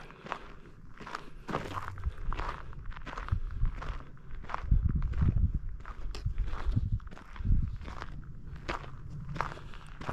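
Footsteps of a person walking at a steady pace along a hard-packed trail, about two steps a second.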